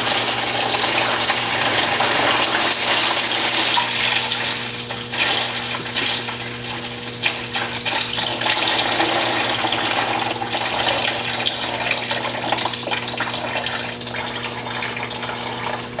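Engine coolant draining out of an LS V8's partly unbolted thermostat housing, a steady pouring and splashing stream into a catch container that eases slightly as the block empties.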